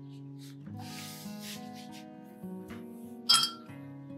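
Background acoustic guitar music, with a single sharp, ringing clink a little over three seconds in: a paintbrush knocked against a ceramic paint dish.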